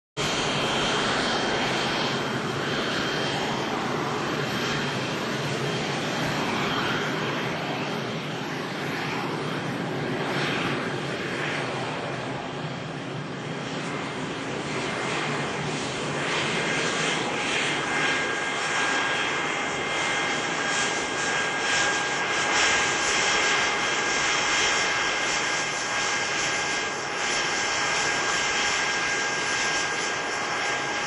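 A business jet's rear-mounted jet engines run at low taxi power, a steady loud rush with high whistling whine. About halfway through, further whine tones join in as the jet turns in and pulls up.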